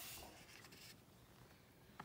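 Faint rustle of a picture book's paper pages as the page is turned and the book settles open, a little louder at first and then fading to near silence.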